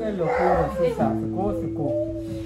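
A man speaking aloud over soft instrumental background music with long held notes.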